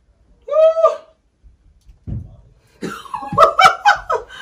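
A woman's wordless reaction to tight new heels pinching her toes: a short rising 'ooh' about half a second in, then near the end a rapid burst of short, breathy, laugh-like sounds.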